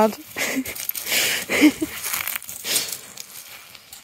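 Rustling and crunching of running through rough grass and onto shingle, in uneven bursts, as a dog races about with the camera-holder following.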